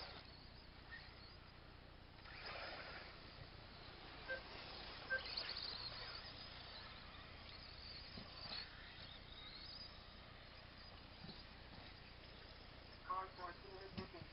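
Faint outdoor background noise, with brief voices near the end.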